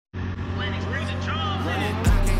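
An engine running steadily with a constant low hum, with a voice heard over it.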